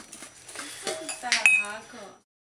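A stainless steel dome plate cover lifted off a room-service plate, clinking against the metal plate rim, with a sharp clink and a short ring about one and a half seconds in.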